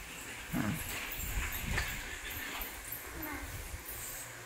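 Plastic toy shopping cart being pushed across the floor, its small wheels rumbling irregularly, with a few short soft vocal sounds from a toddler.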